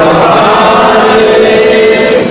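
A male voice chanting a devotional mantra in long held notes.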